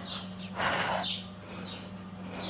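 Faint bird chirps over a steady low hum, with a soft rush of breath about half a second in.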